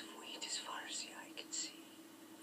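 A man whispering softly, heard through a television speaker.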